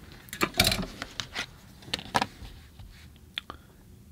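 Handling noise from plastic rulers: a few sharp clicks and knocks as one ruler is put down and a smaller one is picked up and laid against the paper, the loudest knocks about half a second in.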